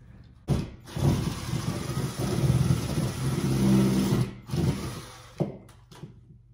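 Ryobi cordless drill backing the screws out of a wall-mounted curtain rod bracket: a brief burst, then a steady run of about three seconds, then another short burst and a click.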